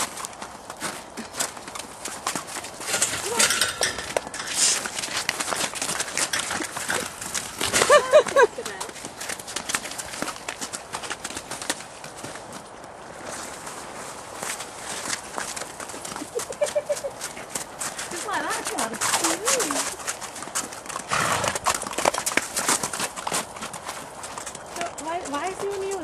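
Welsh ponies' hoofbeats, a steady patter of many hoof strikes as they move about, with a loud whinny about eight seconds in and a few shorter calls later.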